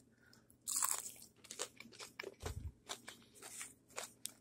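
A bite into a crispy battered fish fillet about a second in, followed by repeated crunching as the crisp batter coating is chewed, about two to three crunches a second.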